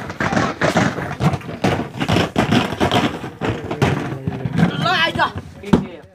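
A group of people talking and calling out over one another. One voice rises high around the fifth second.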